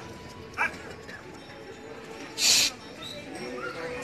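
Rhesus macaques calling: a short rising squeal about half a second in, then one loud, harsh screech a little past halfway.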